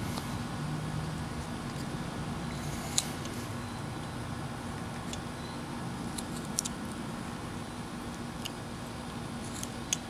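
A carving knife whittling a small wooden figure, giving a few faint, sharp clicks as the blade slices off chips, over a steady low background hum.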